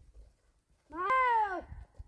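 A cat meowing once, a single drawn-out call that rises and then falls in pitch, about a second in.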